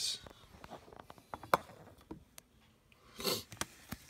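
Light clicks and taps of trading cards being picked up and handled on a desk, with a brief rustle about three seconds in.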